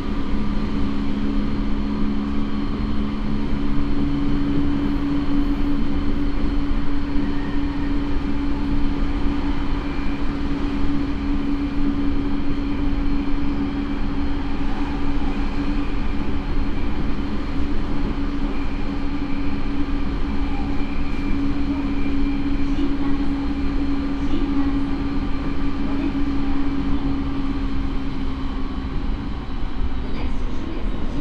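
Running sound heard inside the motor car MoHa E217-1 of a JR East E217 series train, which has MT68 traction motors and a Mitsubishi IGBT inverter. There is a steady low motor hum over the constant rumble of wheels on rail. A second, lower hum fades out a few seconds in, and the remaining tone holds almost to the end.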